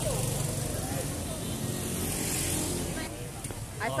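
Street traffic: a motor vehicle engine runs steadily close by for about three seconds, then fades.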